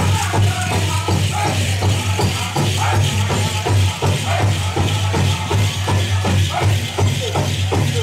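Pow wow drum and singers performing a song, the drum struck in a fast steady beat of about four a second, with the metal cones of jingle dresses rattling as the dancers move. A steady low hum runs underneath.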